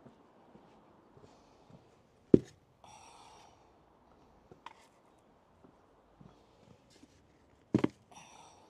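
Plant pots being set down on stone paving: a sharp knock a couple of seconds in and a double knock near the end, each followed by a short scrape.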